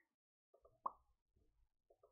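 Near silence broken by a single short pop a little under a second in.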